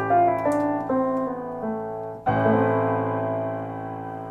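Piano notes: a held chord under a quick run of single notes stepping downward, then a new chord struck about two seconds in, left to ring and slowly fade.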